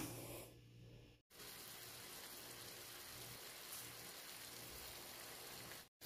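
Faint, steady sizzle of liver strips frying in olive oil in a pan. It starts after a short break about a second in.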